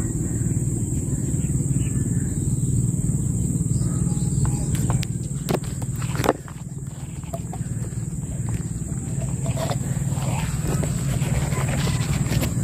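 A loud steady low rumble, easing off about halfway through, under a thin continuous high insect trill, with a few sharp clicks near the middle.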